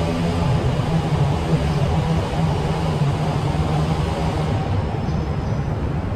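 Steady, loud low mechanical rumble of city background noise, unchanging throughout.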